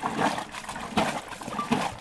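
Wooden kymyz-churning plunger (bishkek) worked up and down in liquid, with a few splashing strokes about a second apart.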